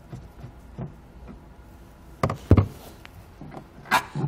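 Quiet plastic taps and clicks of a flat-blade screwdriver and a hand working a plastic taillight wing nut loose inside a car's rear side panel, with a few sharper knocks a little after halfway and one more near the end.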